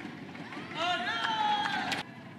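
A badminton player's high-pitched shout as her side wins the rally, starting just under a second in and held for about a second.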